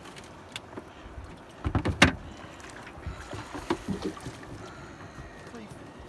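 Set net being hauled by hand over the side of a small boat: scattered knocks and rattles of mesh, floats and seaweed against the hull, with a cluster of sharp knocks about two seconds in.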